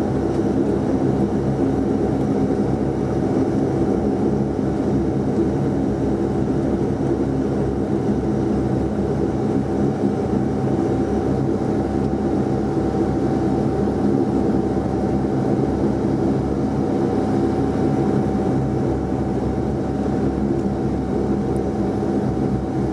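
Saab 340B's General Electric CT7 turboprop engines running steadily while the aircraft taxis, heard inside the cabin: an even drone with a constant high whine over it.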